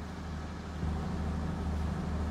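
Steady low background hum of a room, a little louder from just under a second in.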